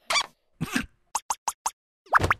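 Cartoon larva character's short vocal noises and comic sound effects: two brief squeaky bursts, then a quick run of four short sharp sounds.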